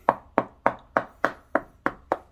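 Two fingertips tapping hard on a smartphone's glass touchscreen: a run of about seven sharp taps, roughly three a second.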